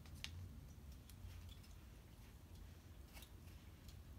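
A few faint clicks of thin plywood puzzle parts and pliers being handled while fitting pieces together, over a low steady hum.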